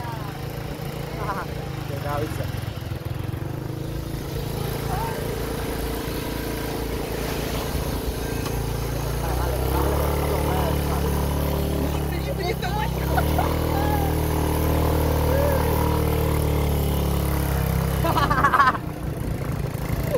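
Small motorcycle engine running steadily under two riders, growing louder about halfway through and easing back near the end, with brief voices over it.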